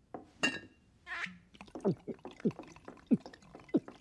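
Cartoon liquid sound effects: a short ringing clink, a brief splash of pouring, then four drops or glugs about 0.6 s apart, each sliding down in pitch.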